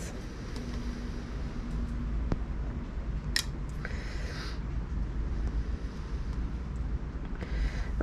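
Low, steady wind rumble, with a single light click about three and a half seconds in and a brief scratchy rustle just after it as dye powder is spooned onto a small digital scale.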